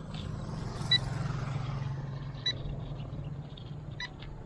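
A motorcycle engine passing on the road over a steady low engine hum, swelling about a second in and then fading. A short electronic beep sounds twice, about a second and a half apart.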